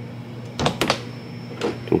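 A couple of sharp clicks from an interior door and its metal lever handle being handled as the door is reached and opened, over a steady low hum.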